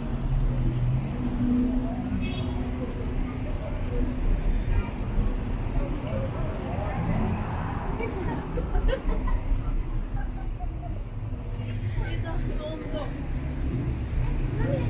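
City street ambience: a steady rumble of road traffic, with passers-by talking faintly.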